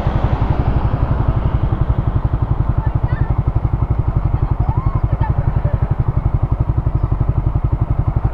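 Suzuki Raider 150 Fi's single-cylinder four-stroke engine idling steadily at a standstill, with an even quick pulse of about a dozen beats a second.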